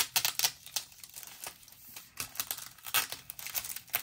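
Wax paper and a sticker sheet crinkling and rustling under the fingers as a sticker is peeled and repositioned, with irregular sharp little clicks and crackles in quick clusters.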